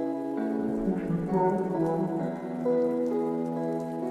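Soft background music of held chords that change every second or so, with a faint rain-like patter over it.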